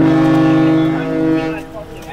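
A boat's horn sounding one steady blast of about a second and a half, starting suddenly and fading out, the signal calling the divers back to the boat.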